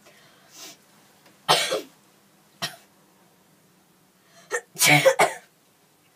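A girl coughing in separate short bursts: a loud cough about one and a half seconds in, a couple of fainter ones, and a loud double cough near the end.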